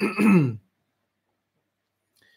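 A man clears his throat once, a short sound that falls in pitch over about half a second.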